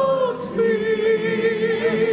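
A group of voices singing in harmony, settling into one long held note about half a second in.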